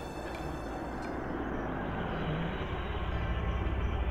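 A car engine running as the vehicle drives up, a steady rumble growing slightly louder.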